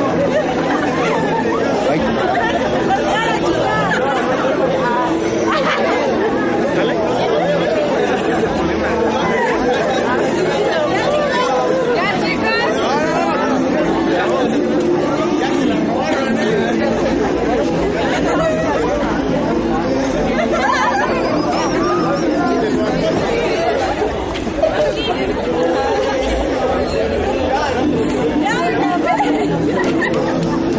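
A group of people chattering, many voices talking over each other at once with no single clear speaker.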